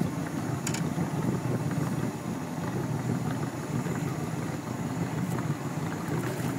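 Boat motor running steadily at trolling speed, a low, even rumble.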